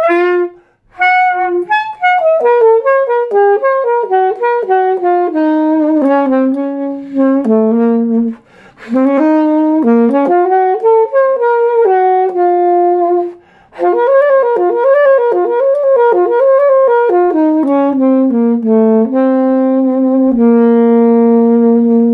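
Buescher Aristocrat alto saxophone played through a vintage Selmer Jazz D mouthpiece: a solo melodic line in three or four phrases with brief breathing gaps, ending on a long held low note. A demonstration of the mouthpiece's tone, which the player says "pops".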